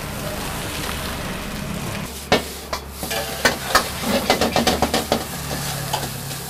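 Fried rice sizzling in a wok as it is stir-fried with a long metal ladle. In the second half the ladle clanks against the wok again and again in quick strokes.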